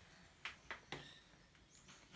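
Near silence broken by three soft short clicks in the first second, and a faint high chirp near the end from a young cockatiel.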